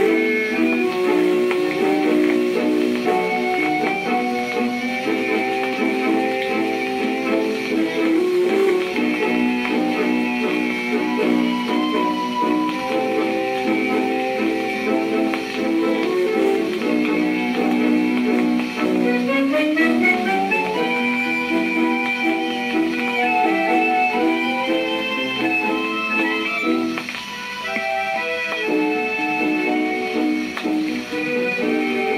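A 1933 Japan Columbia 10-inch shellac 78 rpm record of a tango playing on a portable record player. The sound is thin, with little bass or treble, and the melody runs upward just before the middle of the stretch.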